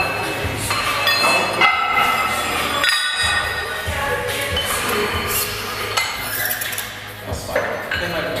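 Background music with a steady beat and bright ringing notes, breaking off briefly about three seconds in.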